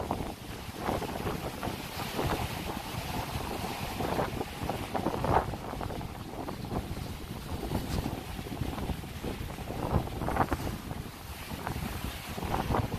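Gusty wind buffeting the microphone in an uneven low rumble, over the wash of surf breaking on the rocks along the seawall.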